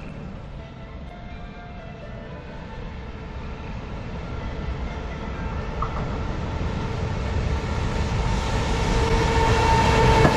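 A JR Freight EF210 electric locomotive hauling a container freight train approaches, its running sound growing steadily louder. A steady whine comes up near the end as the locomotive draws level.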